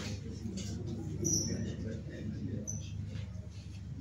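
Quiet hall room tone with a steady low hum and two brief, faint high-pitched squeaks, one about a second in and one near the three-second mark.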